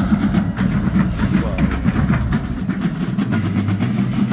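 College marching band playing, with the drums and percussion standing out through many sharp strokes over a full, low band sound.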